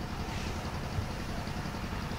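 Steady low background rumble and hiss with no speech, and a faint tick about halfway through.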